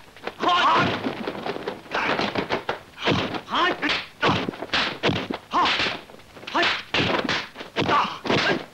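Dubbed kung fu fight sound effects: a fast run of punch, kick and block impacts, one every half second or so, mixed with the fighters' shouts and grunts.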